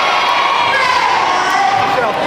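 A roomful of children in an audience shouting and cheering together, many high voices overlapping.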